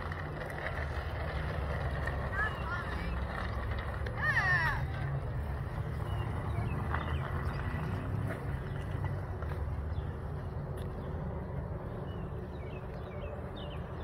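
Low, steady rumble on the phone's microphone outdoors, with a brief high-pitched call from a distant voice about four seconds in and a fainter one a little before.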